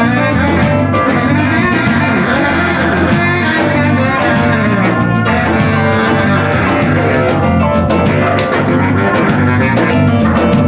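Live band jamming loudly: a Nord keyboard played with a drum kit keeping a steady beat underneath.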